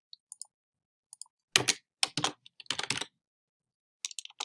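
Computer keyboard key presses and clicks: a few faint ticks in the first second or so, then a quick run of louder keystrokes from about a second and a half in until about three seconds.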